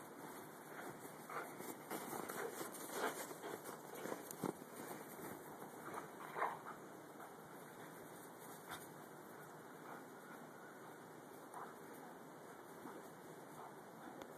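Two dogs playing in deep snow: faint, irregular scuffling and small dog noises over a steady hiss, busiest in the first half, with the loudest one about six seconds in.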